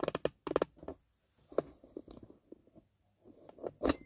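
Handling noise of a camera being pushed back and repositioned on its stand: a quick cluster of clicks and knocks, a lone click in the middle, and a louder thump near the end as it is set in place.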